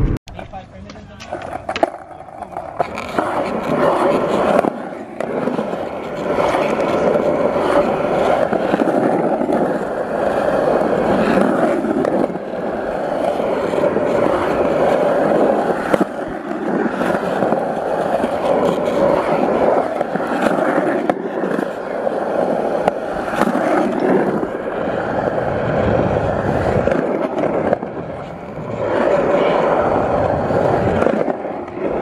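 Skateboard wheels rolling over a concrete skatepark surface: a steady rolling noise that starts about two seconds in, with a few sharp knocks of the board along the way.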